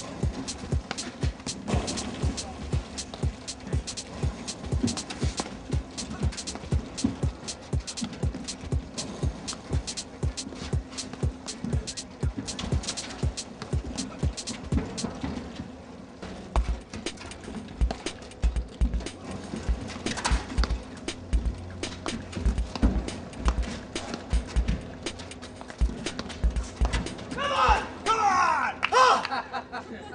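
Background music with a fast, steady percussive beat.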